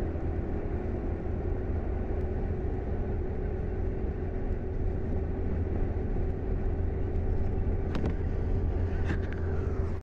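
Steady running noise of a moving vehicle heard from inside its cabin: a low engine and road rumble with a steady hum over it. A couple of brief clicks come near the end.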